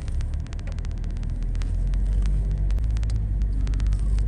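Car driving on a forest road, heard from inside the cabin: a steady low engine and road rumble that grows a little louder about a second and a half in. Many faint sharp clicks run through it.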